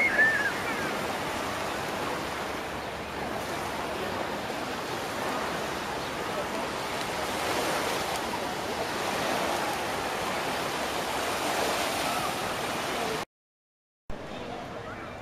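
Beach ambience: a steady wash of surf noise with scattered, indistinct voices of beachgoers, and a short high-pitched call at the very start. The sound cuts off suddenly shortly before the end.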